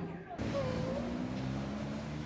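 Raw street sound from archive footage: a car engine running under scattered voices crying out. The sound changes abruptly at a cut shortly after the start.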